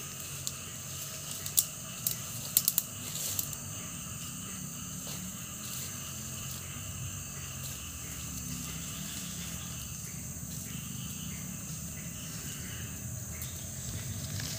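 Steady outdoor hiss with a low rumble beneath, and a few sharp clicks and snaps in the first three and a half seconds while a young calf grazes the undergrowth.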